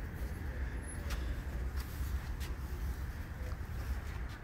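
Low, steady rumble of a loaded shopping cart rolling over parking-lot asphalt, mixed with wind buffeting the microphone, with a few faint clicks.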